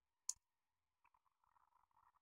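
One sharp plastic click as an N-gauge model railcar's parts are handled, followed by faint crinkling of a small zip-lock plastic bag.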